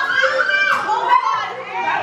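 Several girls' voices calling out and laughing over one another, high-pitched and excited, without clear words.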